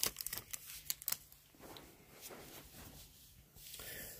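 Crinkling and clicks of a trading-card pack wrapper and cards being handled, sharp crackles in the first second, then faint rustling of the cards.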